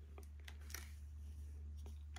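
Faint scattered clicks and light handling rustles from a MiniDV camcorder being held and operated, over a low steady hum.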